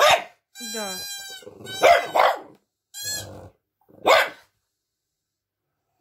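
French bulldog giving four short barks, one right at the start, two close together about two seconds in, and one about four seconds in. Between the barks a toy pipe sounds a wavering, reedy tone.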